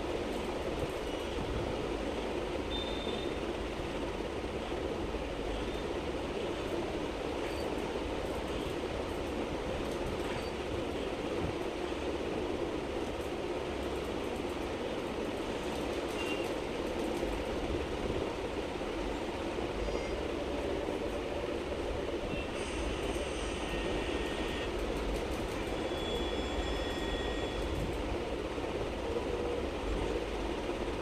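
A steady background noise, a hum with a low rumble beneath it, with no speech. A few faint short high tones come in about two-thirds of the way through.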